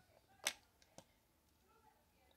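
A lipstick case being handled and opened: one sharp click about half a second in, then a fainter click about half a second later.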